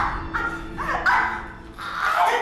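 A woman's short, high-pitched cries in quick succession, about four of them, while she is grabbed and struggles, dying down about halfway through.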